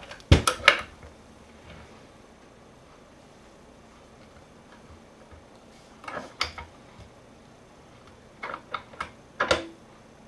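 Metal clicks and clinks of wrenches working the nuts of a homemade bottom bracket press, tightening it to push a BB92 press-fit bottom bracket's cups into the frame shell. The clinks come in three short clusters: the loudest just after the start, another around six seconds, and more near the end.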